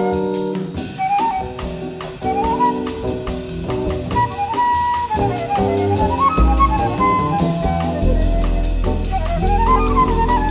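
Jazz quartet recording: a flute plays a winding melody over held piano chords, upright bass and drums keeping time with steady cymbal strokes. The bass notes grow heavier about six seconds in.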